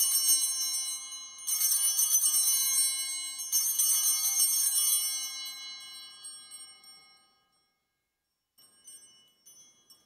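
Altar bells rung three times at the elevation of the chalice, after the consecration. Each ring is a jangle of small high-pitched bells that dies away over a few seconds, with a few faint jingles near the end.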